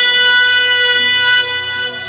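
Live folk music from a singer with accordion: one long, steady held note, with a lower note joining about halfway through.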